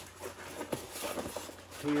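Cardboard rustling and scraping as a white inner box is slid out of a larger cardboard box and set down, with a few soft knocks.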